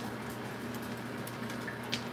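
Steady low electrical hum with a soft watery hiss from running aquarium equipment, with a few faint high ticks.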